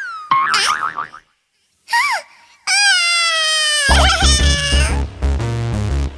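Cartoon sound effects: springy, gliding pitched tones, with a short chirp about two seconds in and a longer held tone after it. Upbeat music with a heavy bass beat starts about four seconds in.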